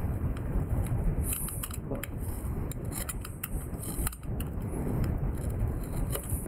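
Excess tire plug strips being cut off flush with a motorcycle tire's tread: scattered short clicks and snips with handling noise, over a steady low rumble.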